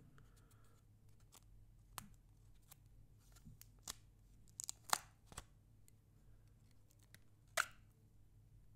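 Clear plastic packaging and protective film being handled and peeled off a new iPod touch: scattered sharp plastic clicks and crackles, the loudest just under five seconds in and another near the end.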